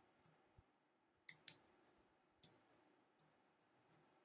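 Faint, scattered clicks of a computer mouse and keyboard: a pair about a second and a half in, a quick cluster near two and a half seconds, and a few small ones near the end.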